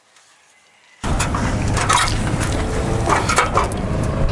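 Ladder clattering as it is handled, with knocks and crunching, starting suddenly about a second in after near silence.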